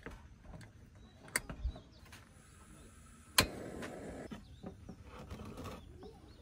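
Light metal clicks from a stovetop hot sandwich maker's handles and latch. About three and a half seconds in comes one sharp clack as the press is opened, followed by about a second of hissing.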